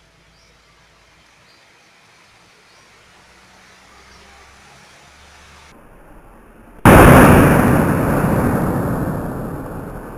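Sodium metal reacting in a rainwater puddle: about seven seconds in, a sudden loud blast, followed by a rushing hiss that fades over the next few seconds.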